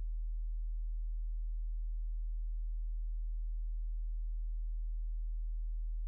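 A steady low electrical hum, one deep tone that holds unchanged throughout with nothing else over it.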